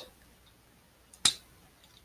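A single sharp click of plastic as a part of a small transforming robot toy figure snaps into place, a little past halfway.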